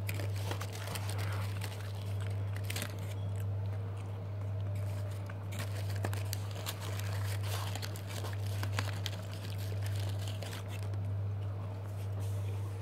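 Close-up chewing of a crispy fried chicken tender, with small crunches and crinkles scattered throughout. A steady low hum runs underneath.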